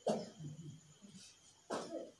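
A person coughing: one cough at the start and another near the end, with a faint voice between.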